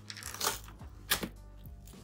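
Cardboard shipping box being handled and worked open, with two brief sharp cardboard rustles about half a second and a second in.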